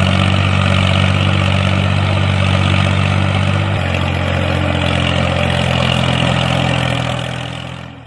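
Tractor engine running steadily with a low, even note that shifts slightly about halfway through, then fades out near the end.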